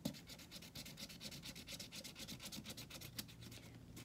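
Felt-tip marker scribbling rapidly back and forth on an egg-carton heart, colouring it in: a faint, fast, even rubbing of many strokes a second. A short soft sound comes right at the start.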